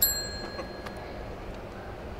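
A single bright metallic ding that starts sharply and rings with several high tones, fading over about a second and a half.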